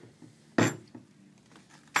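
A single sharp click-clunk about half a second in, from the chain brake lever on the front of a 45cc chainsaw being moved.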